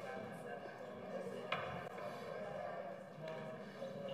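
Quiet murmur of congregation members still praying aloud, with a faint knock about one and a half seconds in.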